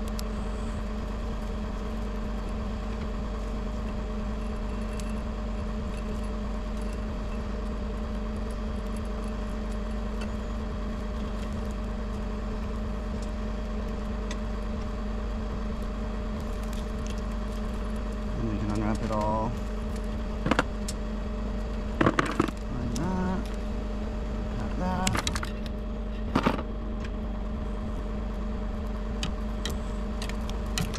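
Bucket truck's engine idling steadily. In the second half there are a few sharp clicks and rattles from hands working in the open splice enclosure.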